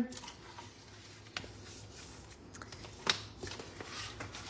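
Scored cardstock being folded and burnished with a bone folder: soft paper rubbing and rustling, with two small taps, one about a second and a half in and one about three seconds in.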